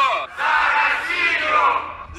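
A crowd chanting a slogan together in Russian, "For Russia!", as one long shout of many voices.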